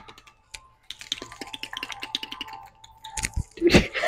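Long fingernails tapping and scratching on pre-workout drink bottles, ASMR-style: a quick run of light clicks, then a couple of louder knocks near the end.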